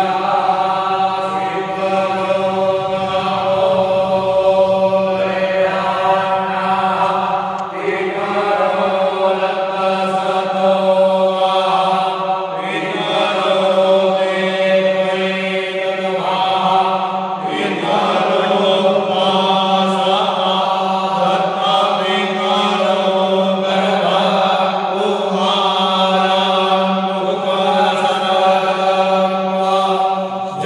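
Devotional chanting by voices in unison, in long held phrases that change every few seconds over a steady low drone.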